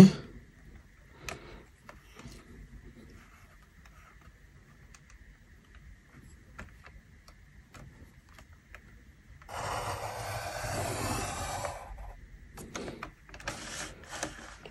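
Pencil lead scratching across drawing paper as a line is ruled along a straightedge: a steady rasp lasting about two and a half seconds in the latter part, after a few faint clicks.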